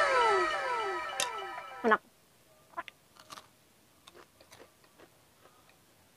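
An added sound effect of overlapping, echoing meow-like tones, each falling in pitch, fades out over the first two seconds. After that come only faint, scattered crunchy chewing sounds of someone eating.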